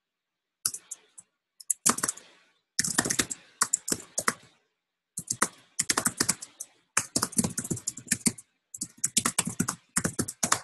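Typing on a computer keyboard: quick runs of key clicks in bursts, separated by short pauses.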